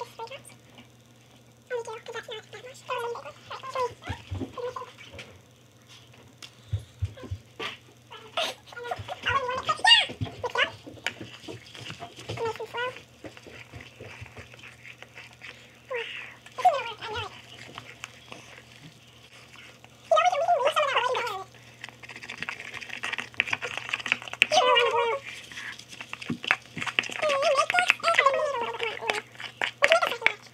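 Children's voices and laughter, indistinct, with scattered clicks and scrapes of a metal spoon stirring white glue and food colouring in a plastic bowl, over a steady low hum.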